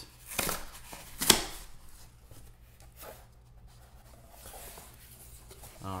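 A cardboard box being opened by hand: two sharp noises as the flaps come free, the second and louder about a second in, then softer cardboard handling that dies away.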